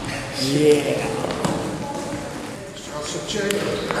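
A man's voice briefly, then a few sharp slaps as hands and forearms strike during a two-person Wing Tsun hand drill on a sports-hall floor.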